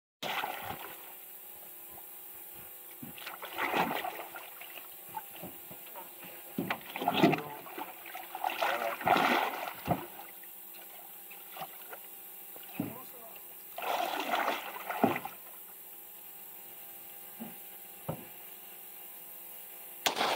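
Water splashing in about five loud bursts as a hooked alligator thrashes at the surface beside an aluminium boat, with a few short sharp knocks between the bursts.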